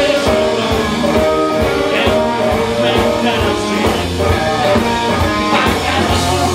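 Live blues band playing an instrumental passage: electric guitar over bass guitar and drums, with a steady beat.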